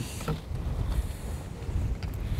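Wind buffeting the microphone in a low, uneven rumble, over the wash of choppy water around a small boat.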